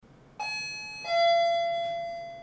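Electronic doorbell chime playing two notes, a higher one about half a second in and then a lower one that rings on and slowly fades.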